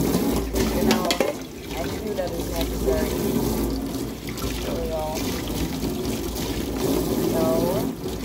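Kitchen tap running onto a frying pan as it is rinsed, the water splashing off the pan into a steel sink.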